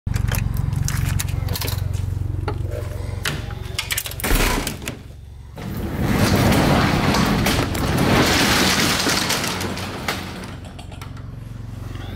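Keys and a door lock clicking and rattling, then a roll-up garage door opening: a long rattling rush of noise from about six to ten seconds in that gradually dies away.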